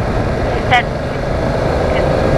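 BMW F900R's parallel-twin engine pulling under wind and road noise as the motorcycle accelerates gently, the sound growing slowly louder.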